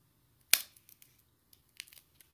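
Communion bread broken by hand at the fraction: one sharp crack about half a second in, a few small snaps, and a second, weaker crack near the end.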